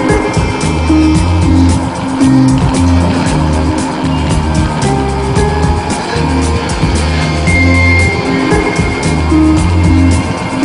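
Instrumental rock passage with a steady drum beat, bass and electric guitar, no vocals.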